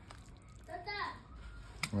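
A short burst of a voice about a second in, not a clear word, then a single sharp click just before the end.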